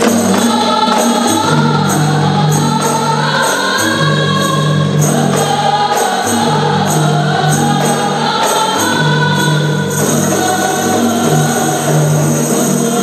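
Women's qasidah group singing a melody together to a steady beat of hand-struck rebana frame drums, over long held low notes.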